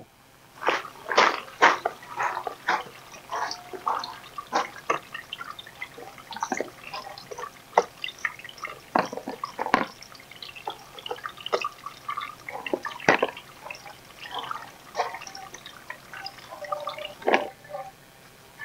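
Water dripping irregularly, a drop or a few drops a second, some drops with a brief ringing pitch, as water runs through a hydroponic growing system.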